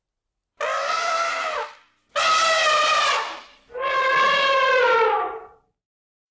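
An animal calling three times, each call about a second long, pitched and held, sagging slightly in pitch at the end.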